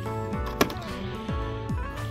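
Soft background music, with one sharp plastic clack about half a second in as blister-packed toy cars are shifted on a store shelf.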